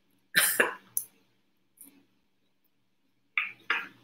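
A woman coughing: a short double cough about half a second in and another near the end, with a light click between them.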